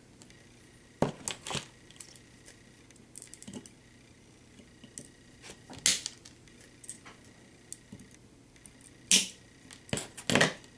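Scattered sharp clicks and light taps of hands handling the small plastic parts and zip ties of a multirotor's camera mount, with the loudest clicks about a second in, near six seconds and near nine seconds.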